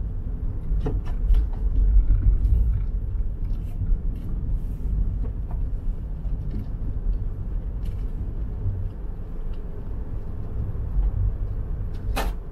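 Deep, steady rumble of a car driving slowly over a packed-snow road, heard from inside the cabin, with a few faint scattered clicks.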